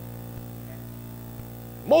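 Steady low electrical mains hum in the recording, with no other sound until a man's voice starts right at the end.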